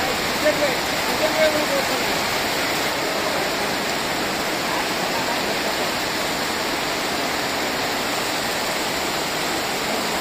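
Heavy rain pouring down steadily, a dense, even hiss with no let-up.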